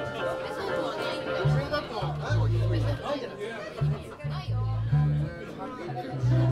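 Electric bass playing a series of held low notes, starting about a second and a half in, while people chatter in the room.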